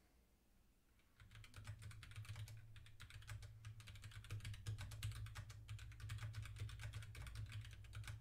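Faint rapid typing on a computer keyboard, starting about a second in: a quick, irregular run of key clicks with a low hum under it.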